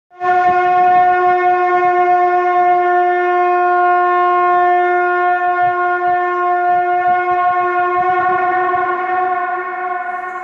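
A conch shell (shankh) blown in one long, steady, unbroken note.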